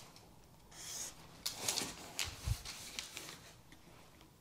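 Tracing paper rustling and a long wooden ruler scraping and sliding across it as the ruler is shifted on a cutting mat, in several short bursts, with a soft thump about two and a half seconds in.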